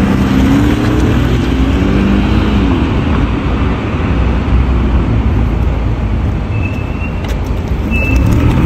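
City street traffic: cars passing with a steady rumble of engines and tyres, one vehicle's engine rising slightly in pitch over the first few seconds before fading out. A faint, thin high tone comes in near the end.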